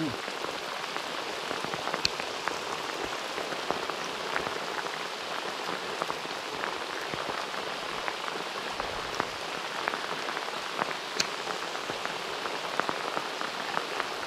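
Heavy rain lashing down on a river surface: a steady hiss, with many individual drops ticking close by.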